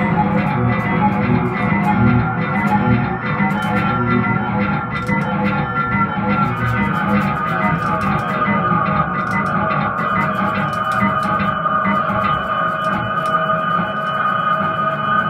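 Electric guitar played through effects with some distortion, a thick layer of long held, ringing notes. From about six and a half seconds in, a high sustained note rings out over the rest, with scattered sharp ticks throughout.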